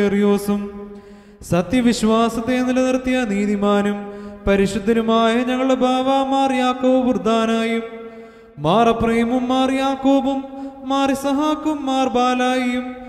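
A man's voice chanting the liturgy of the Holy Qurbana, a Malankara Orthodox service in Malayalam, in long, ornamented held notes. There are three phrases, with short breaths about a second and a half in and about eight seconds in. The last phrase opens with a rising swoop.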